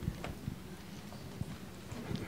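Quiet room sound of a large hall with a seated audience, with a few scattered faint knocks and taps.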